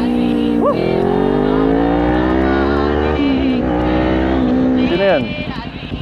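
Kawasaki Ninja 400's parallel-twin engine pulling hard under acceleration, its pitch climbing steadily, dipping at about three seconds in and again near four and a half seconds as it shifts up, then climbing again.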